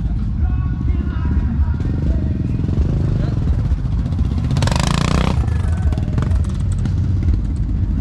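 Motorcycle rally ambience: crowd voices and engines over a steady low rumble. About halfway through, one motorcycle revs briefly and loudly for under a second.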